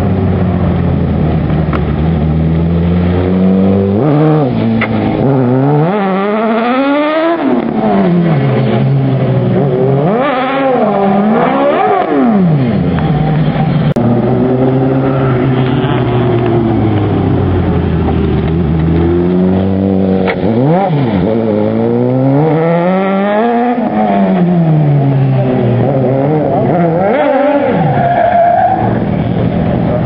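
Modified wide-body Mini's engine revving hard and dropping back again and again as the car is slid around. The engine note climbs and falls in long sweeps every few seconds.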